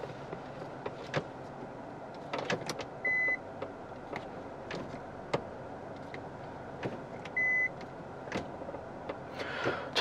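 Automatic gear selector being shifted through its positions, clicking at each detent, with two short high electronic beeps, one about three seconds in and one about seven and a half seconds in, as reverse is selected and the rear parking sensor comes on.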